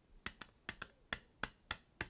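A quick, uneven run of light sharp clicks, about four a second.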